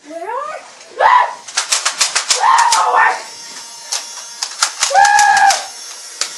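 Children shouting and whooping: a rising yell at the start, then loud drawn-out cries about a second in, around two and a half seconds and about five seconds in. Under them runs a rapid, uneven flurry of sharp smacking clicks.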